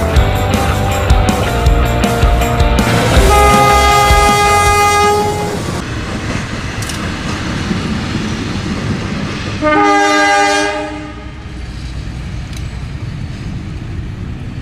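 Diesel locomotives running with a heavy engine rumble. A horn sounds a long chord of several notes about three seconds in, and a second, shorter horn blast comes about ten seconds in.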